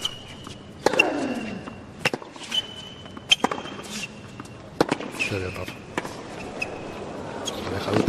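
A tennis rally on a hard court: four sharp racket-on-ball hits, a little over a second apart, with short high squeaks of shoes on the court between them.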